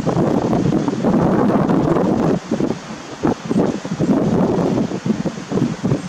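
Wind buffeting the microphone, heavy for the first two seconds or so, then coming and going in gusts.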